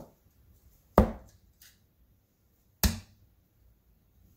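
Two darts striking a bristle dartboard, each a sharp thunk, about a second in and again nearly two seconds later.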